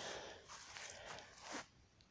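Faint rustling with a brief louder scuff about one and a half seconds in, dropping to near silence just before the end.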